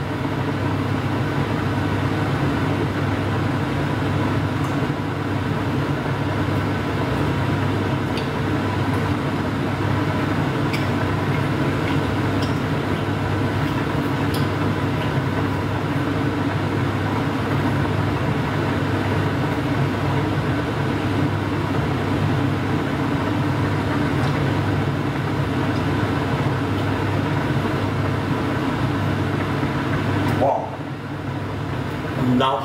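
A running kitchen appliance hums steadily and low, unchanging throughout, with a few faint clicks in the middle.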